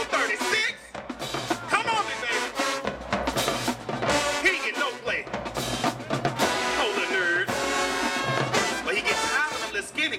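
High school marching band playing, brass carrying a bending, wavering melody over snare and bass drums, with a brief drop in loudness about a second in.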